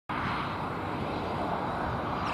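Twin-engine jet airliner on approach with landing gear down, its engines heard as a steady, even rumble and hiss.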